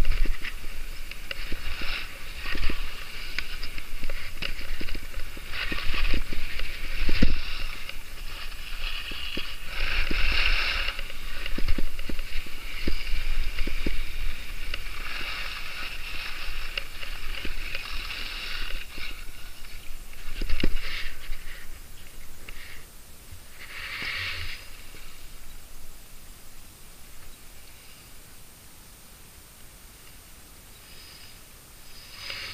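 Skis scraping and carving over hard-packed piste snow through a run of turns, each turn a surge of hiss, with wind rumbling on the microphone. The sound falls away over the last several seconds.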